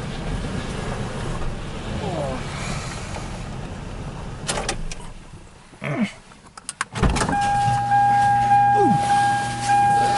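A car engine running as the car rolls slowly into a garage, then dropping away. About seven seconds in there is a sharp clunk, followed by a steady electric whine with a low hum under it that keeps going.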